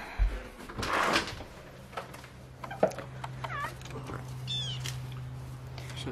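A door being opened, then a house cat meowing a few short times, over a steady low hum.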